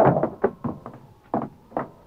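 Three short knocks from a 1940s radio drama's sound effects, one about half a second in and two close together near the middle, after the tail of a man's voice.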